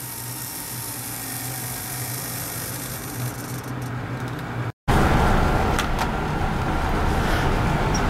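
Small continuous-rotation hobby servo whirring steadily as it spins its horn. A little before halfway it cuts off in a brief dropout, and a louder steady background noise follows.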